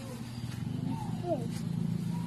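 Wordless voice sounds that slide down in pitch about a second in, over a steady low drone.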